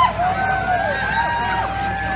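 Several voices calling out in long held notes that rise and fall, overlapping one another.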